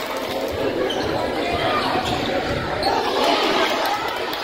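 Basketball being dribbled on a hardwood gym floor, a run of low bounces under steady crowd chatter in a large echoing gym.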